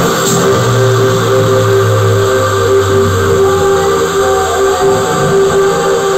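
Electronic dance music from a DJ mix played loud over a club sound system. The beat drops out just after the start, leaving sustained synth chords and a deep bass note that fades after about three seconds.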